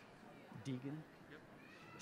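A quiet hall with one faint, brief human voice about half a second in.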